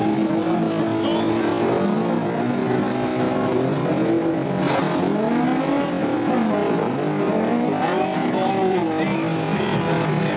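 Several race-car engines revving up and down as the cars pass on a wet track, their pitches rising and falling against one another. There is a short burst of noise about halfway through.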